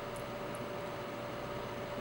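Steady low hiss with a faint steady hum and a couple of very faint ticks in the first half second: room tone, with no clear sound from the thread wrapping.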